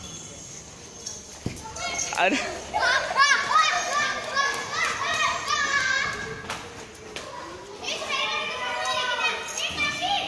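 Children's high-pitched voices calling out and chattering excitedly. There is a quiet stretch for the first two seconds, then voices from about two seconds in, a lull near seven seconds, and more calling toward the end.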